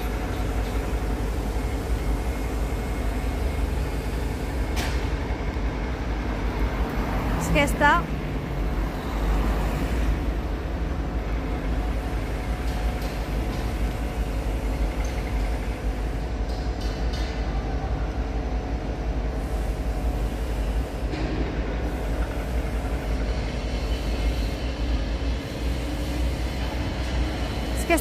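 Steady construction-site machinery hum over a low rumble, with a single click about five seconds in.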